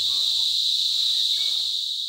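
Insect chorus: a steady, high-pitched continuous buzz.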